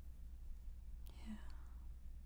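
Faint room tone with a steady low hum. About a second in comes a soft mouth click, followed by a brief breathy whisper-level sound from a woman.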